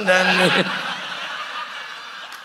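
An audience laughing at a joke, the laughter slowly dying away after a man's drawn-out last word ends about half a second in.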